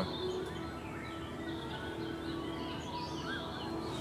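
Small birds singing and chirping, a busy run of quick, warbling high notes, with a faint steady low hum underneath.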